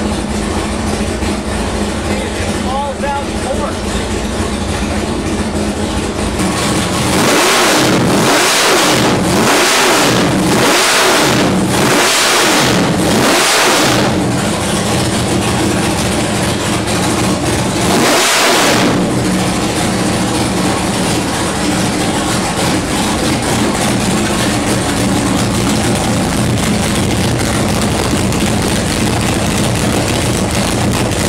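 A 632 cubic inch naturally aspirated, carburetted big-block Chevy V8 idling, then revved in quick throttle blips: five in a row, a pause, then one more. It then settles back to a steady idle.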